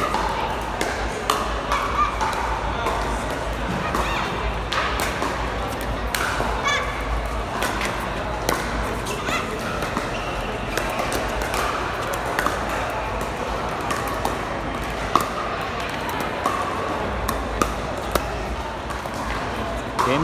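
Pickleball paddles striking a hard plastic ball, with the ball bouncing on the court: many short, sharp pops at irregular intervals from several courts, heard in a large indoor hall over a steady murmur of crowd chatter.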